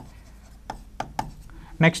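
Stylus writing on an interactive display board as a word is handwritten: a few faint taps and light scrapes of the tip on the screen.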